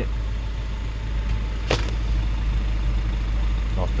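1969 Ford Capri 1600's four-cylinder engine ticking over, a steady low drone heard from inside the cabin. A single sharp click sounds a little before halfway through.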